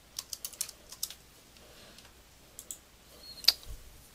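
Typing on a computer keyboard: a quick run of about half a dozen keystrokes in the first second, a couple more a little later, and one sharper click near the end.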